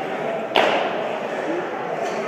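A loaded barbell snatched from the hips to overhead, with one sharp clack about half a second in as the lifter drops under the bar into the catch, over the steady hubbub of a gym.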